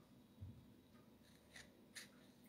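Near silence: room tone, with a soft low thump about half a second in and a few faint ticks near the end.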